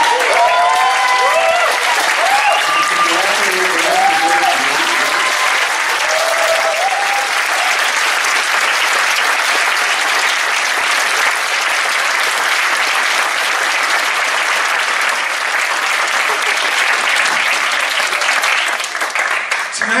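A large audience applauding steadily, with voices calling out and cheering over the clapping during the first six seconds or so.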